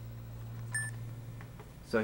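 Steady low room hum with one very short, high electronic beep just under a second in, as recording resumes after a tape change.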